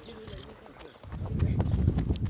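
Footballs being touched and kicked on grass in a dribbling drill, giving light, irregular knocks, with players' calls early on. About a second in, a loud low rumble sets in and covers the rest.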